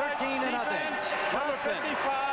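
A male television announcer's commentary on the broadcast.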